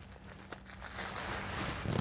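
Faint rustling and crinkling of a shopping bag as an item of clothing is pulled out of it, growing louder near the end, over a faint steady hum.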